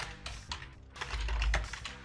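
Typing on a computer keyboard: a quick run of separate keystrokes, with a low rumble a little past a second in.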